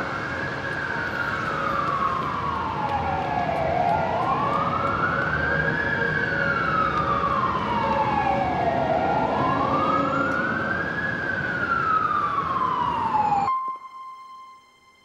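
Emergency vehicle siren wailing in a slow rise and fall, about three cycles of some five seconds each, over a steady rumble of city traffic; it cuts off suddenly near the end.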